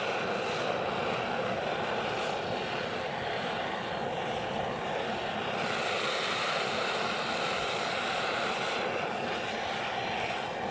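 Butane mini blowtorch flame running with a steady roaring hiss as it heats the bottom of a bee smoker's metal firebox to light the fuel inside.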